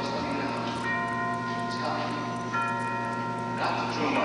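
Orchestral tubular chimes struck a few notes, roughly a second apart, each note ringing on and overlapping the last. A wash of broader noise rises near the end.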